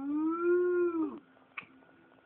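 A person imitating a cow's moo: one long call whose pitch rises slightly and then falls, ending a little over a second in.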